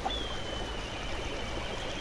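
Steady outdoor rushing background noise with a low hum, and a faint thin high tone that slowly falls in pitch.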